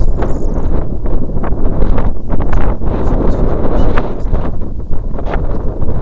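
Wind buffeting the camera microphone: a loud, low rumble that surges and dips with the gusts.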